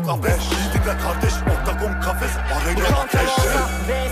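Hip hop track with deep bass notes that slide in pitch several times, under a rapped vocal.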